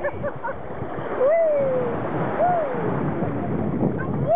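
Shallow water splashing as a child lies in it, kicking his feet and paddling with his hands.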